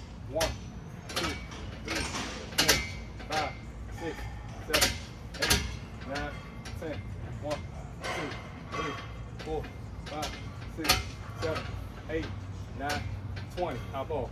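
A man doing fast straight bar dips on a steel bar, exhaling hard and grunting with each rep: a sharp burst of breath roughly every three quarters of a second, with short voiced grunts between.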